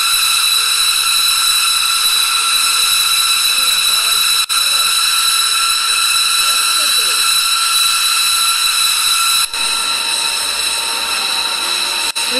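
Steady, high-pitched jet turbine whine of several layered tones from a B-2 Spirit bomber running on the ground, cutting out briefly twice.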